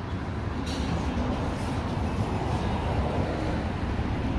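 Steady street traffic noise from a large vehicle running past, with a short sharp click about two-thirds of a second in.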